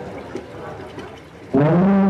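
Male Quran reciter's voice through a PA system. The previous phrase dies away quietly, then about one and a half seconds in a new phrase starts with a loud, long held note.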